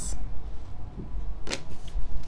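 Oracle cards being handled as a card is drawn from the deck, with a sharp card snap about one and a half seconds in and a lighter one just before the end.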